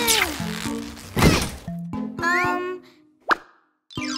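Cartoon sound effects over light children's background music. A falling zap comes as the toy ray gun fires, then a loud thump about a second in and a rising glide. A short sharp hit near the end is followed by a brief moment of silence.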